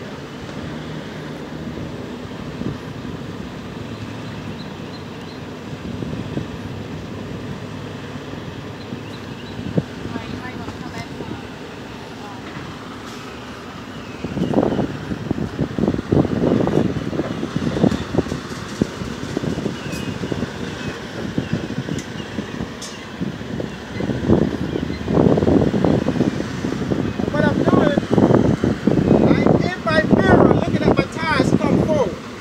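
Semi truck's diesel engine running steadily while the trailer's tandem axle is being slid, with a much louder, rough, uneven noise starting about halfway through.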